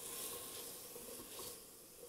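Faint, steady sizzle of chopped vegetables and rehydrated porcini mushrooms sautéing in oil in a stainless steel pot, stirred with a wooden spoon.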